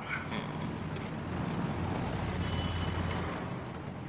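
A car engine rumbling low as the car pulls up. The sound swells about halfway through and dies away near the end.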